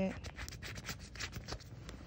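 Fingers rubbing and scratching over a plastic foot-pad package, giving a quick, irregular run of small scratchy clicks and rustles.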